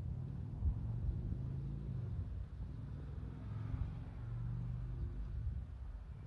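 Low, steady rumble of a motor vehicle's engine running, swelling and easing off a little.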